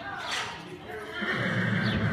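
A horse whinnying, loudest in the second half, with hoofbeats on the arena footing.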